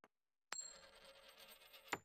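A coin spun on a wooden tabletop, setting off with a sharp click about half a second in. It rings and rattles for about a second and a half, then stops with a sharp clack near the end.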